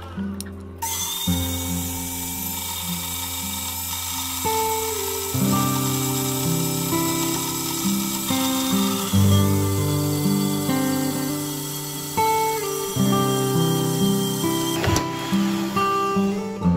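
Metal-cutting band saw running through a rusty steel shaft. Its blade makes a steady hiss that starts about a second in and stops near the end as the cut goes through. Acoustic guitar music plays over it.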